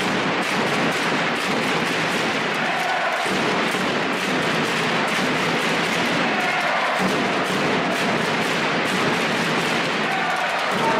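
Dense crowd noise in an indoor sports hall, with supporters' drums beating through it as repeated thuds.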